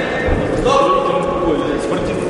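A voice in the crowd shouting one long, high call that drops in pitch at the end, over the hubbub of a sports hall, with a dull thud just before it.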